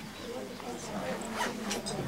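Quiet murmured voices with a few short rustling scrapes about three quarters of the way through.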